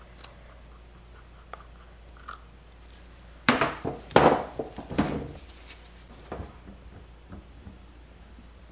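Plastic spoon and cup being handled while pink mica goes into soap batter: three short scrapes and clacks close together about halfway through, then a few small ticks, over a low steady hum.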